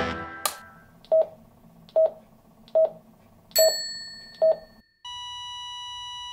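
The last note of music dies away, then a click and five short electronic beeps of the same pitch, a little under one a second. About five seconds in, a steady electronic tone of several pitches starts and holds.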